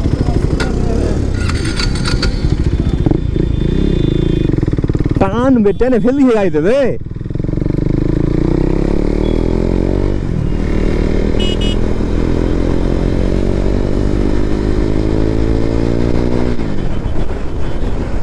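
KTM Duke 390's single-cylinder engine on its stock exhaust, accelerating hard through the gears. The pitch climbs steadily and drops at an upshift about ten seconds in and again near the end. A voice calls out briefly in the middle.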